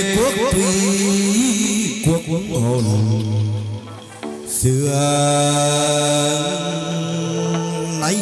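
Chầu văn ritual music: long, held chant-like notes with quick repeated rising slides in the first two seconds, accompanied by a plucked moon lute (đàn nguyệt). The music drops briefly about four seconds in, then another long note begins.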